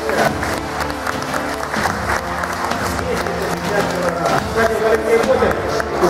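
Audience applauding after a bench press attempt, with background music and crowd voices.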